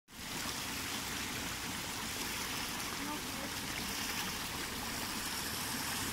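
Shallow stream water running steadily over a sloping rock slab: an even, unbroken rushing.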